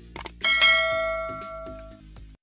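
Sound effect of a couple of quick clicks followed by a single bright bell ding that rings and fades over about a second and a half, the kind used for a 'hit the notification bell' prompt.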